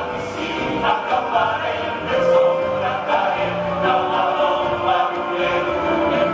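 Large men's choir singing in multi-part harmony, holding long notes that shift from chord to chord.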